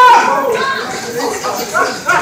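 Several voices talking and calling over one another, some of them high-pitched, loudest at the start.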